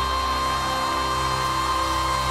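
A woman holding one long, steady high belted note over a band accompaniment.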